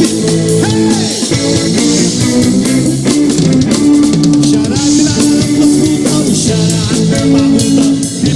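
Live rock band playing an instrumental passage: electric guitar, bass guitar and a Tama drum kit with cymbals, loud and without a break.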